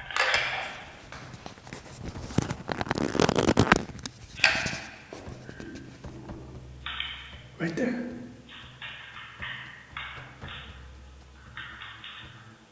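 A handheld voice recorder playing back an earlier recording through its small speaker: crackly noise and clicks for the first few seconds, then short, thin, muffled snatches of voice.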